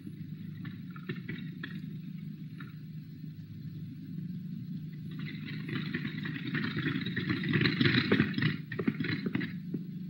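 Steady low hum, joined about five seconds in by a rough rolling noise with clicks that grows louder and then fades near the end: a small demonstration cart pulled along a table by a cord winding onto a turntable.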